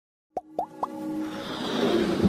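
Animated intro sound effects: three quick rising plops about a quarter second apart, then a swell that builds under a music bed.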